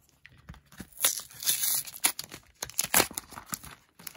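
Cardboard-backed plastic blister pack of Pokémon cards being torn open by hand: cardboard tearing and plastic crinkling in a series of crackling bursts, starting about a second in.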